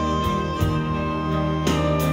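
Live instrumental music from a rock band with a small chamber orchestra, playing held chords on strings and keyboard with a few soft note changes.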